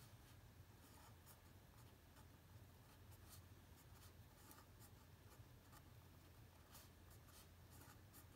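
Faint scratching of a marker pen writing on paper, in short separate strokes, over a low steady hum.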